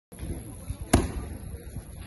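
A punch landing on a boxing pad with one sharp slap about a second in, among softer low thuds.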